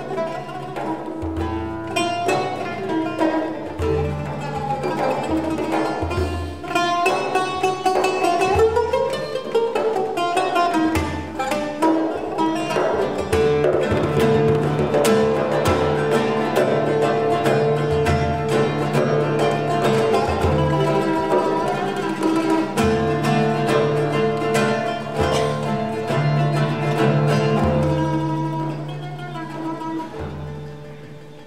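Live oud playing a plucked melody, accompanied by a large hand frame drum giving deep strokes every second or two. The music quiets a little near the end.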